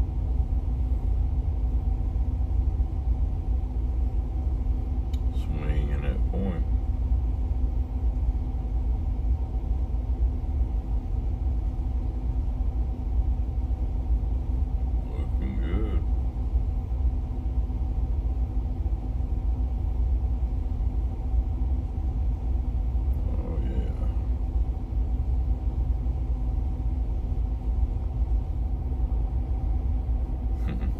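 Towboat's diesel engines running steadily, heard from the pilothouse as a low rumble with a steady hum. Three brief snatches of a voice come through it, about 6, 15 and 23 seconds in.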